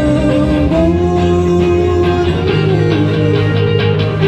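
Rock band playing an instrumental passage led by electric guitars, with steady drum hits underneath.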